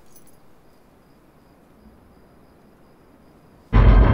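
Faint crickets chirping over a quiet night ambience, then a sudden loud, deep rumble sets in near the end and keeps going.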